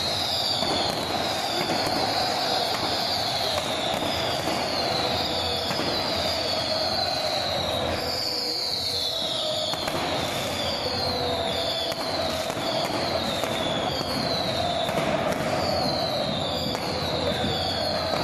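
Whistling pyrotechnics fired from a stadium stand: high whistles that each fall in pitch over about a second, a dozen or so in turn every second or two, over continuous crowd noise.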